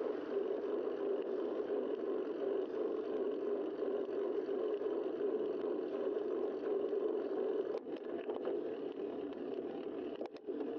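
Steady wind and road noise picked up by a bicycle-mounted camera while riding, with a couple of brief knocks near the end.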